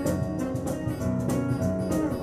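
Live acoustic guitar, fingerpicked, with a hand-played cajon keeping a steady beat in an instrumental passage of a song.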